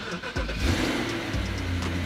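2008 BMW 550i's 4.8-litre V8 starting up on its first start after a transmission service, catching about half a second in and then running steadily.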